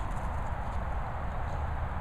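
Steady wind and handling rumble on a handheld camera's microphone, with soft footsteps on grass as the person filming moves.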